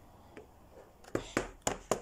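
Small plastic toy figurine being handled and tapped on a tabletop: quiet at first, then a few sharp clicks in the second half.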